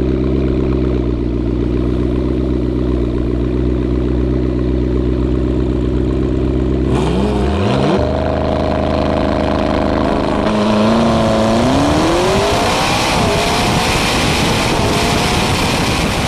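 Car engine idling with a steady, even note. About seven seconds in the note shifts, and from about eleven seconds the engine revs up, its pitch climbing steadily as it accelerates.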